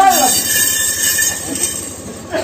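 Continuous bright, metallic ringing of brass hand cymbals from the theyyam percussion ensemble, with a short loud cry that rises and falls right at the start.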